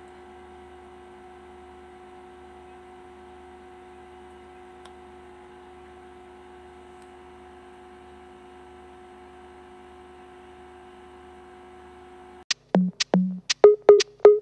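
A quiet, steady electrical hum made of several unchanging tones. About twelve and a half seconds in it cuts off, and loud electronic background music with a drum-machine beat starts abruptly.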